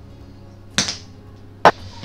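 Two sharp clicks a little under a second apart, the second the louder, as a small herb jar is handled and set down on the table. A faint steady music bed plays underneath.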